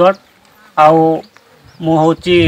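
A man's voice in a pause between phrases: one held syllable at a single steady pitch for about half a second, then speech resuming near the end.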